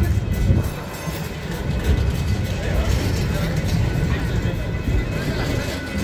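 Freight train of enclosed autorack cars rolling past at a street crossing: a steady, low rumble of car wheels on the rails.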